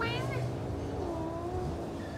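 Cat giving one long, drawn-out meow about half a second in while its ear is being cleaned, just after a short burst of a woman's voice.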